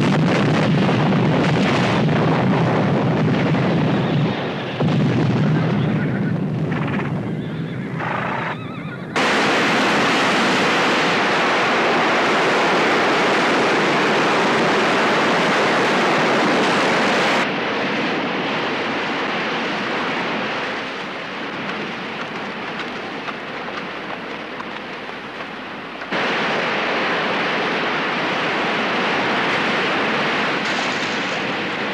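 The rumble of a large explosion dying away. About nine seconds in it gives way suddenly to a loud rush of flood water. The torrent eases at about seventeen seconds and swells again near the end.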